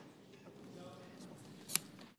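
Quiet room tone of a large legislative chamber with faint distant voices, and one sharp click near the end.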